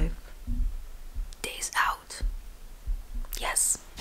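A woman whispering close to the microphone, a few short breathy phrases, with some soft low bumps in between.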